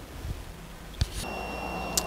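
Multimeter continuity tester beeping: a click about a second in, then a steady high beep lasting under a second. The beep signals continuity between one side of the dipole and the shield of the coax connector.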